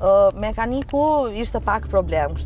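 A woman's voice speaking inside a moving car's cabin, over a steady low road and engine rumble.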